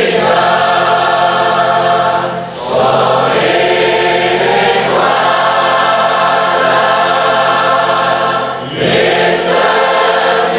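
Choir singing a hymn in long held phrases, with short breaks for breath about two and a half seconds in and again near the end.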